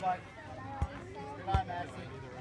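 Voices and background chatter, with two short dull thumps, one a little under a second in and a louder one about half a second before the end.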